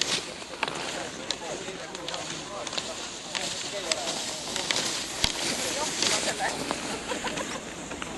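Several people's voices talking at the trackside, mixed with the scrape of cross-country skis and sharp clicks of ski poles on packed snow as skiers pass.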